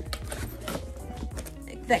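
A clear plastic tackle box is handled and slid into a fabric backpack's compartment, with a run of small clicks, knocks and rustles. Steady background music plays underneath.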